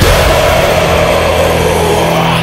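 Heavy metal music: a sustained, distorted electric guitar sound sliding steadily down in pitch over a low, held drone.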